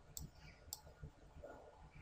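Two faint computer-mouse clicks, about half a second apart, over near-silent room tone.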